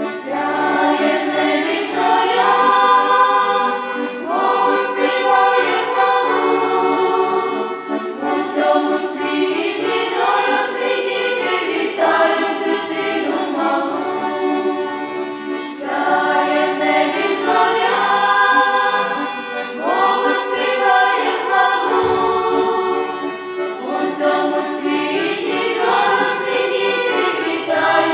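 A choir of women and girls singing a Ukrainian Christmas carol (koliadka), in phrases of a couple of seconds each.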